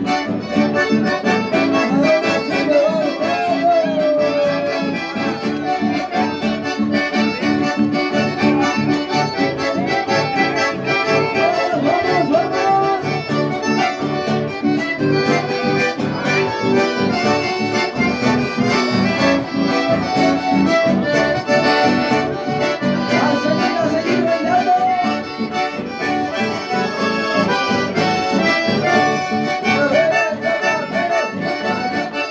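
Instrumental chamamé played live on piano accordion with acoustic guitar accompaniment, a steady dance rhythm that carries on without a break.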